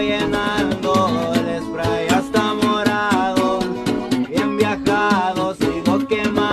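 Acoustic guitars playing an instrumental break in a Mexican corrido: a lead guitar picks melodic lines with sliding notes over steadily strummed rhythm guitar and a bass line.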